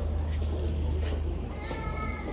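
A steady low hum, with a brief high-pitched cry starting about one and a half seconds in.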